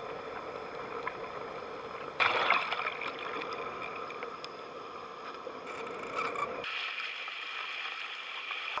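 Water rushing past a NautBoard and its rider's camera as the board is towed through the water, over a steady hum of several tones. A louder surge of water comes about two seconds in. Near the end the deep part of the sound drops away and a brighter hiss is left as the board rises to the surface.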